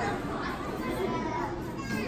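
Low background chatter from a seated audience of children and adults, a few faint voices talking at once.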